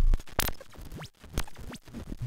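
Ciat-Lonbarde Cocoquantus 2 electronic instrument putting out glitchy, scratchy noise: sharp clicks and crackles, with quick pitch sweeps falling and rising. The loudest crackle comes about half a second in.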